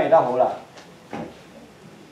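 A man's voice speaking briefly and stopping, then a quiet room with a faint click and a soft knock as a ceramic mug is lifted off a wooden lectern.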